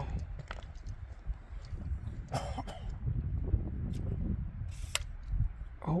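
Low, uneven wind rumble on the microphone, with a few short knocks and rustles as the phone camera is handled against tripod-mounted binoculars.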